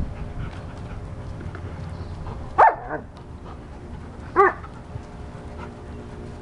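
A German Shepherd-type dog barking twice during rough play, two short barks a little under two seconds apart.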